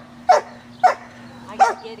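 A dog barking at a training helper during IPO protection work: three sharp, evenly spaced barks, a little over half a second apart.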